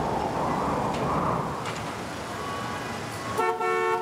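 City traffic noise, swelling and easing, then a car horn toot near the end.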